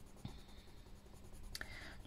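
Faint scratching of a dark Derwent Inktense watercolour pencil shading on paper, laying down a base colour for the hair.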